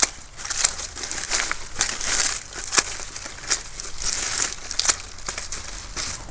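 Small hand shears snipping banana leaves into short pieces: several sharp snips at uneven intervals over the crinkling rustle of the leaves being handled.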